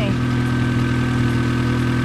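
A Honda D16A6 four-cylinder engine idling steadily with the hood open, its ignition control module, distributor rotor and distributor seal freshly replaced.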